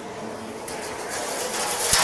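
Hand-cranked circle cutter shearing a round out of a sheet-metal traffic sign: a scraping cutting noise that grows louder through the second half, with a sharp click near the end.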